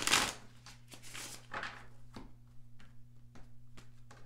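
Tarot cards being shuffled and handled: a loud swish right at the start, another about a second in, then a run of light flicks and clicks as cards are worked through, over a faint steady hum.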